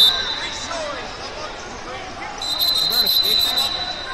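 Sports-hall crowd noise with scattered voices. From about two and a half seconds in, a high, steady whistle sounds for about a second and a half.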